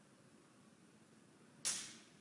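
Faint room tone, broken near the end by one brief, sharp hissing burst that fades within a fraction of a second.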